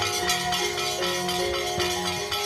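Javanese gamelan playing: struck metallophones ringing note after note, with lower sustained tones beneath.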